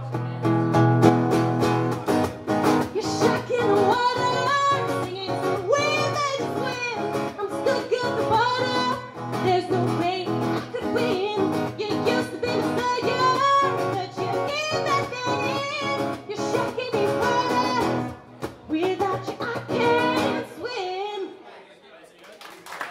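A woman singing to her own acoustic guitar, played live. The song thins out and comes to an end shortly before the close.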